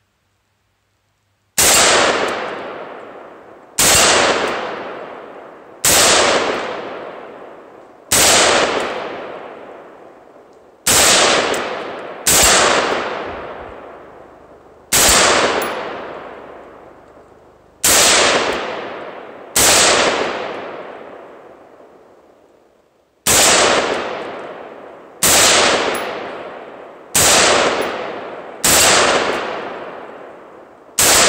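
AR-15 rifle firing about thirteen single shots, roughly one every two seconds. Each is a sharp crack followed by a long fading tail.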